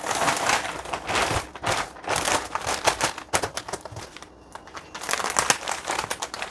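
Plastic bags crinkling and rustling as a plastic-wrapped bundle is pushed into a plastic carrier bag and folded up, in quick irregular crackles. There is a short quieter pause about four seconds in.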